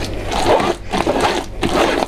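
Gloved hand scraping and rubbing thick rosehip pulp through a wooden-framed sieve, a wet rasping sound in about three strokes.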